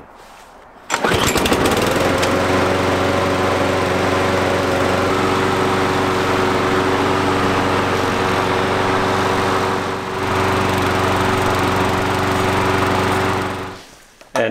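Briggs & Stratton 550-series engine on a Murray push mower, running at a steady speed to warm the oil before it is extracted. It comes in abruptly about a second in and fades out near the end.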